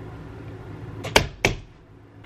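Two short, sharp smacks about a third of a second apart, over a faint low hum.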